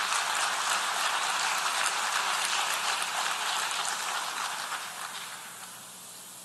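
Audience applauding, dying away over the last second or two.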